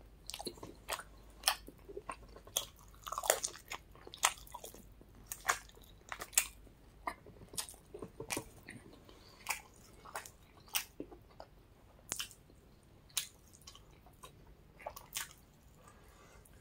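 A person chewing and biting into chicken wings close to the microphone: irregular crunches and mouth clicks, about one or two a second.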